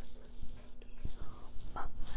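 Quiet room tone with a steady low hum, a soft knock about halfway through, and faint breathy mouth sounds as the sounds of a word are mouthed almost without voice.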